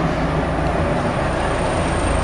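Steady rumble of street traffic, a continuous low noise with no distinct events.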